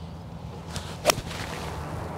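A golf six iron striking a ball off fairway turf: one sharp, crisp strike about a second in, a well-compressed, clean contact.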